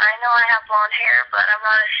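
A voice talking through a cellphone's speaker during a call, thin-sounding with no low end, in quick bursts of words.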